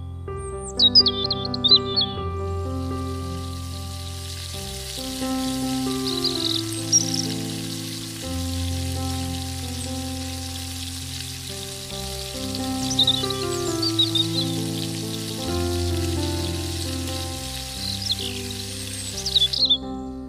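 A small round of dough frying in hot oil in a miniature iron kadai: a steady sizzle that starts about two seconds in and cuts off just before the end. It sits under background music with bird chirps.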